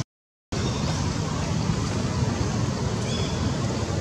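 Steady outdoor background rumble and hiss, cut to dead silence for about half a second at the start. A faint high chirp comes about three seconds in.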